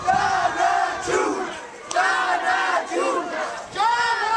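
A crowd of marchers chanting a slogan in unison, loud shouted phrases repeating about every two seconds.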